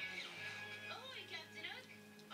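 Faint television audio in the background: voices over music.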